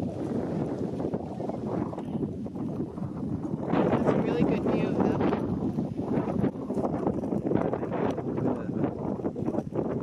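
Wind buffeting the microphone as a steady low rumble, with faint voices in the background.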